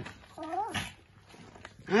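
A small dog whines once, briefly, about half a second in, the pitch rising then falling. A short soft noise follows just after.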